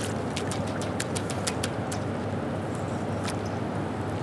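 Steady rush of river water pouring over a low dam and rapids. A quick run of sharp clicks comes through the first second and a half, with one more click a little after three seconds.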